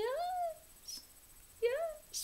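A woman's long, drawn-out "ooh" of delight, rising in pitch and ending about half a second in, followed near the end by a second, shorter rising "ooh".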